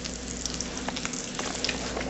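Bacon sizzling in a cast-iron skillet: a steady frying hiss with scattered small pops of spattering fat.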